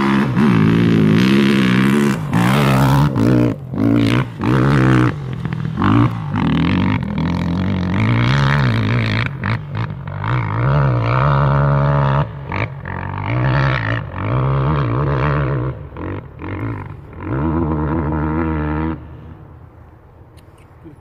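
Enduro dirt bike engine revving hard under load on a steep hill climb, its pitch surging up and down with the throttle in repeated bursts broken by brief drops in power. It fades sharply about a second before the end as the bike nears the crest.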